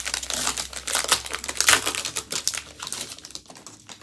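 Shiny plastic wrapper of a Topps baseball card pack being torn and peeled open by hand, a dense run of crinkling and crackling that thins out near the end.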